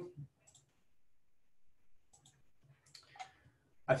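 A few faint computer mouse clicks spread over an otherwise quiet stretch.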